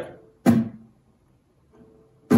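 A single muted downstroke on a nylon-string acoustic guitar, struck with the index fingernail and damped at once by the hand. It is a sharp percussive strum about half a second in, and the chord dies away within a fraction of a second. This is the muted stroke of a down-up-mute-up strumming pattern.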